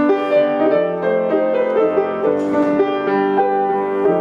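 Grand piano played solo: a melody over held chords, the notes changing every half second or so.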